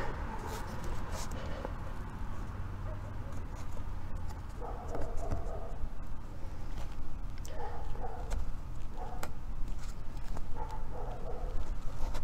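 A dog barking in several short bouts, starting a little before halfway through and recurring to near the end, fainter than the talking around it.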